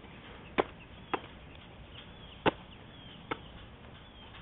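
Four short, sharp knocks, unevenly spaced, from a football being caught and handled, over faint outdoor background.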